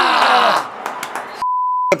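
A censor bleep: one steady, high, pure beep of about half a second in the second half, with all other sound muted under it, cut off abruptly. Before it, the tail of a man's voice over crowd noise fades out.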